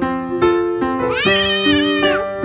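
Piano music playing steadily, with a young child's high-pitched squeal about halfway through, rising and falling and lasting about a second.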